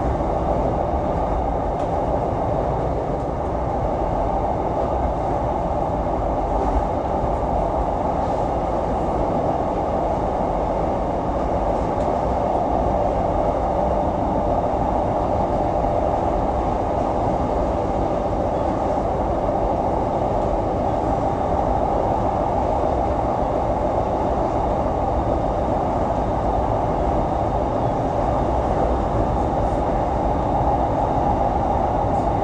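Commuter train running at steady speed, heard from inside the car: an even rumble and rolling noise from the wheels on the track, with no announcements or braking.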